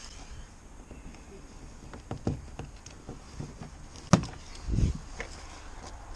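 A few clicks and knocks from handling loose plastic van door trim parts, the loudest a sharp click just after four seconds in, followed by a dull thump.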